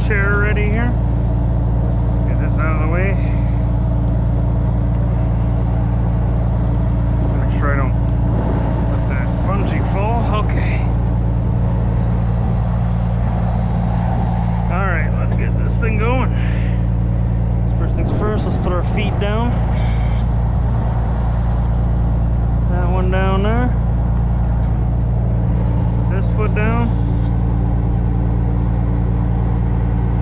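Truck's diesel engine running steadily at raised RPM, with the PTO engaged to drive the crane's hydraulics.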